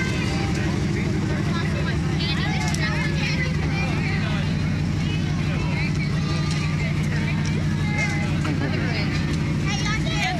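A large parade vehicle's engine running steadily close by, a constant low hum, with crowd voices chattering over it.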